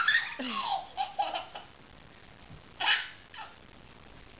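A baby laughing: a run of short, high laughs in the first second and a half, then one more brief laugh about three seconds in.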